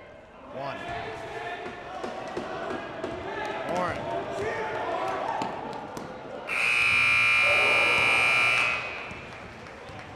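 Gym scoreboard buzzer sounding one steady blast of about two seconds, marking the end of the first half. Before it, crowd voices rise and carry on in the gym.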